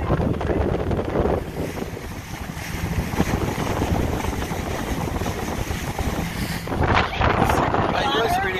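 Wind buffeting the microphone aboard a motorboat under way, over the steady noise of the boat's engine and water rushing past the hull, with a louder gust near the end.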